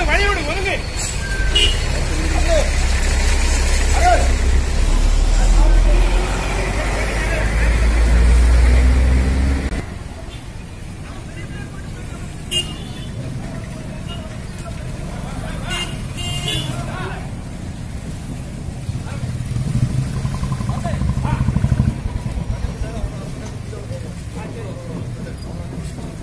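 Street traffic noise: vehicle and motorcycle engines passing with occasional horn toots, mixed with people's voices. A heavy low rumble fills the first ten seconds and stops abruptly, and a lower rumble rises again near the end.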